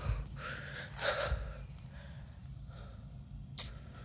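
A person's breathy exhales, a short one just after the start and a louder one about a second in, then a single short click near the end.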